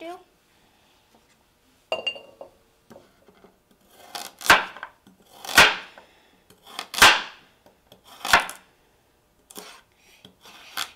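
A chef's knife cutting through a raw carrot and knocking down on a wooden cutting board: four crunching chops, roughly a second apart, each a short swell ending in a sharp knock, with a light clink about two seconds in and a fainter cut near the end.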